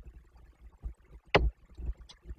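Raindrops striking the metal nest box and its microphone: irregular low taps and thumps, with one sharper, louder tap about a second and a half in.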